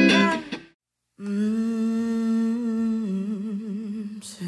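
Guitar chords that cut off abruptly less than a second in, followed by a brief dead silence. Then a voice holds one long hummed note, steady at first and wavering near the end.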